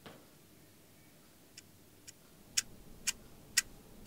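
Clockwork ticking, two ticks a second, starting faint about a second and a half in and soon growing loud and sharp. It is the mechanical heart heard in the woman's chest, the sign that she is a marionette, a robot double.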